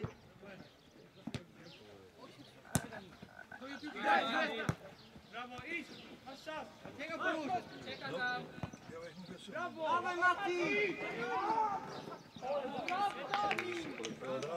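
Players calling and shouting to each other across an outdoor football pitch, with several sharp thuds of a football being kicked.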